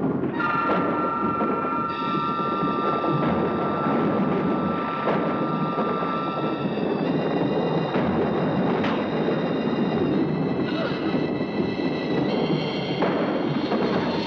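Eerie horror-film score: long held high chords that shift to new notes every few seconds over a dense, rumbling lower layer, with a few sharp accents.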